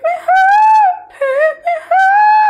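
A man singing a short phrase unaccompanied in a high, light voice: a long held note, a few shorter lower notes, then another long held note near the end.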